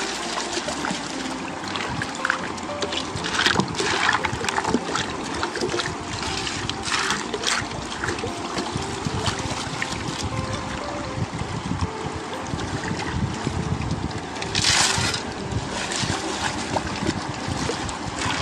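Water sloshing and trickling as a wide wooden gold pan is swirled and dipped in shallow river water, washing sand and gravel. Sharper splashes come about three and a half seconds in, around seven seconds, and near the end.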